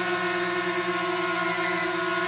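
DJI Mavic Mini quadcopter holding a hover: its four motors and propellers give a steady, even whine made of several held tones.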